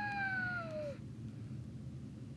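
A child's drawn-out cry of 'ah', sliding slowly down in pitch and fading, cutting off about a second in. A faint low hum follows.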